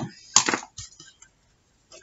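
A single sharp crack about half a second in, with a short scratchy tail: a small hand-held craft tool being handled or set down on the work table.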